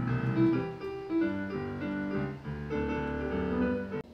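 Grand piano played, a melody over sustained low chords with notes ringing on.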